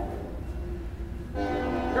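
Train horn sounding, a steady held chord that grows louder about one and a half seconds in, over a low rumble.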